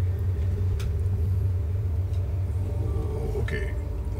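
A steady low rumble with no words over it, and a faint, brief voice near the end.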